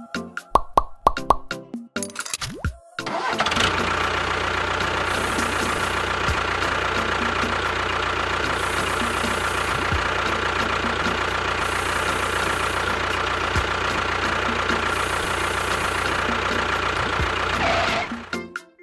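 Small motor starting up about three seconds in and running steadily at an even pitch for about fourteen seconds, then stopping, over background music.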